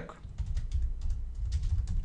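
Typing on a computer keyboard: a quick, uneven run of keystrokes starting about half a second in.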